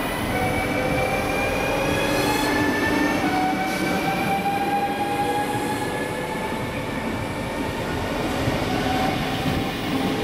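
NS double-deck electric multiple unit running through the station and gathering speed. Its traction motors whine, with several tones rising slowly in pitch, dropping back and rising again, over the steady rumble of wheels on rail.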